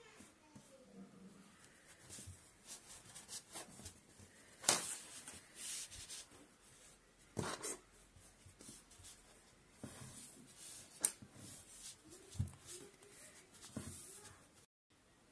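Quiet rubbing and rustling of yarn being threaded with a plastic yarn needle and drawn through a crocheted shoe, fingers working the fabric. A few sharp clicks and taps stand out, the loudest about 5, 7.5 and 11 seconds in.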